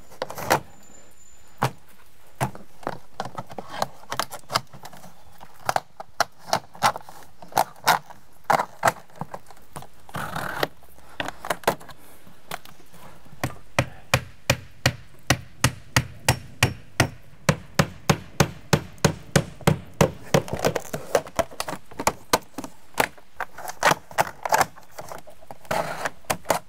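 Hammer driving nails into vinyl J-channel and siding: groups of sharp blows, building to a long steady run of strikes about two or three a second through the second half.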